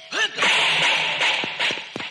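Fight-scene sound effects: a brief shout, then a loud whoosh of a swung blow lasting about a second, and a sharp hit near the end.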